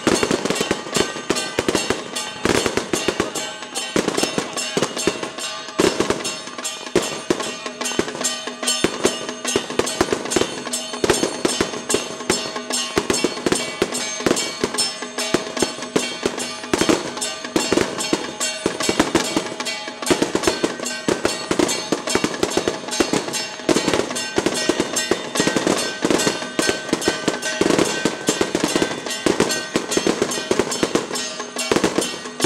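Strings of firecrackers crackling densely and without a break, over loud temple-procession music with steady held notes.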